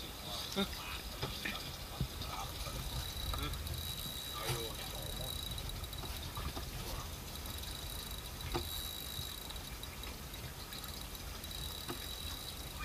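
Steady low rumble with faint water sounds around a small boat at sea, and a few faint voices now and then.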